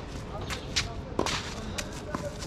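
Tennis rally on a hard court: a few sharp pops of racket strings striking the ball and the ball bouncing on the court, spaced roughly half a second apart.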